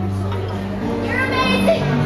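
A young woman singing a pop song live into a microphone over a backing track with steady held bass notes, amplified through a PA speaker.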